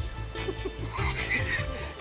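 Soft background music of held notes that step from one pitch to another, with a faint high sound about a second in.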